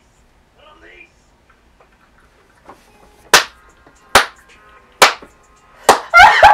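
A man clapping his hands while laughing: four sharp claps a little under a second apart in the second half, after a faint short vocal sound about a second in.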